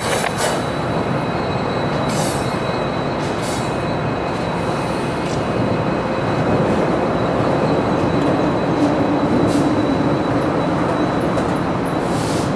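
EMD SD70MAC diesel-electric locomotive running in a rail yard. Its 16-cylinder two-stroke EMD 710 engine makes a loud, steady rumble, with a steadier low note for a moment about nine seconds in.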